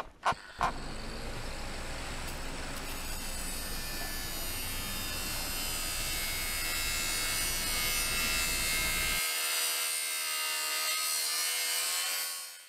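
Trailer sound-design drone: a steady hissing, buzzing noise that swells slowly, with faint held tones above it, after a couple of short pulses at the very start. The low rumble under it drops out about nine seconds in, leaving the thinner hiss and tones.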